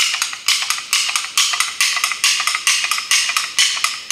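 Hand-operated ratcheting tube bender clicking as its handle is worked to bend steel brake line around the die: a quick, steady run of sharp clicks, about four or five a second.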